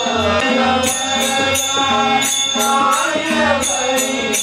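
Kannada devotional bhajan: voices singing a gliding melody over harmonium accompaniment with a steady drone. A percussion beat of about two to three strikes a second runs under it, with low drum pulses.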